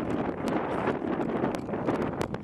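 Wind blowing over the camera microphone: a dense, steady rush with a few brief sharp crackles.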